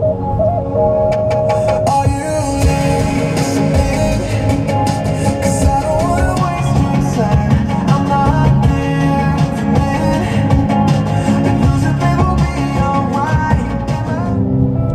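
Rock music playing through a car's stereo speakers, heard inside the cabin.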